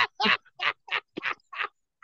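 A man laughing in short, breathy bursts, about five in quick succession.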